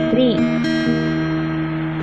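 Steel-string acoustic guitar, single strings fingerpicked in turn and left to ring together, a new note plucked about two-thirds of a second in.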